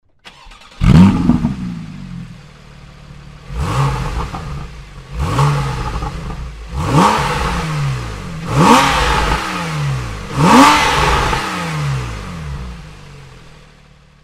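Porsche 991 flat-six engine through a Techart sports exhaust with its exhaust valves closed, standing still: it starts with a flare of revs about a second in, then settles and is blipped five times, each rev rising sharply and falling back to idle. The level eases off near the end.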